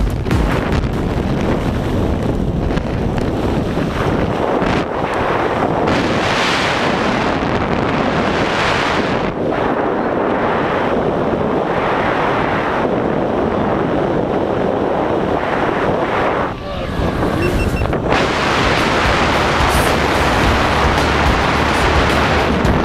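Wind rushing and buffeting on the camera microphone during a tandem parachute canopy descent, steady and loud with a brief dip about three-quarters of the way through.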